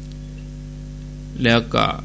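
Steady electrical mains hum, several low steady tones at once, with a man's voice speaking briefly about three-quarters of the way through.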